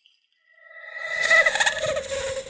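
Horror sound-effect stinger: a warbling, pitched sound with several tones that swells in from about half a second in and is loudest near the end.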